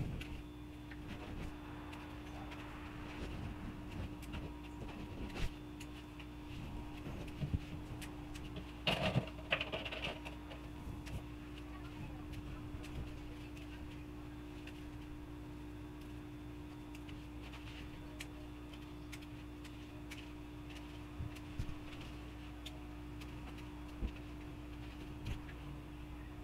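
Faint rustling and small clicks of lettuce leaves being picked by hand, over a steady low hum. A slightly louder cluster of handling noise comes about nine seconds in.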